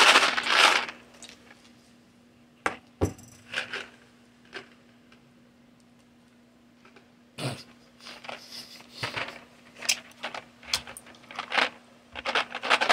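Small candies rattling and clicking in a cardboard candy box as it is handled and shaken: a few separate taps early on, then a run of short rattles over the last few seconds. A faint steady hum runs underneath.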